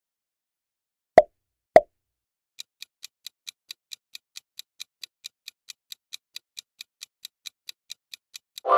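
Two short pop sound effects about half a second apart, then the even ticking of a quiz countdown-timer sound effect, about four or five ticks a second, starting nearly three seconds in.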